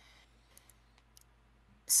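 Near silence: a quiet pause with a few faint, short clicks around the middle.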